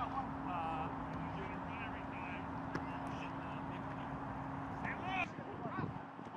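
Scattered short shouts and calls from people on and around a rugby pitch over a steady outdoor hiss, with more calls near the end. A steady low hum runs underneath and stops about five seconds in.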